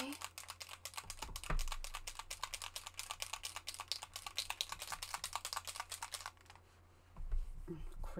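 Fast typing on a computer keyboard: a quick, irregular run of key clicks for about six seconds, then it stops.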